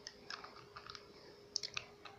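A few faint, short clicks, with a quick cluster of them about a second and a half in.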